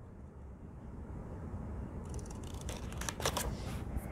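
Scissors snipping off overhanging washi tape at the edge of a paper page, a few short crisp cuts with light paper rustle in the second half.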